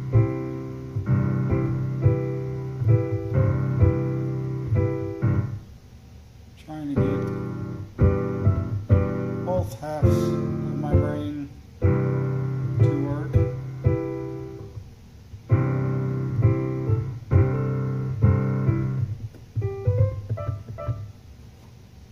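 Digital piano played by hand, improvised chords struck and held in phrases. The playing pauses about six seconds in and thins to a few quiet notes near the end.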